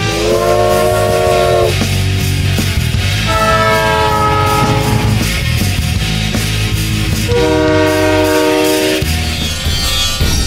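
Train horn sounding three long blasts, each held for about a second and a half, over the rumble of a moving train.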